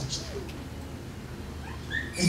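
A brief pause in a man's speech: low room hum, with his voice trailing off just at the start and the next phrase beginning at the very end.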